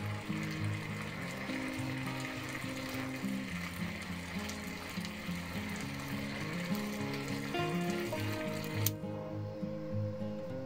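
Water boiling in a tin lid heated by a homemade ferrite-core induction heater, a steady sizzling hiss under background music with sustained low notes. The sizzle cuts off with a click about nine seconds in, as the heater is switched off.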